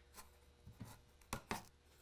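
Faint handling knocks and taps as a pre-drilled wooden board is lifted and a torn fabric strip is pulled through one of its holes. There are a few light taps, then two sharper knocks about a second and a half in.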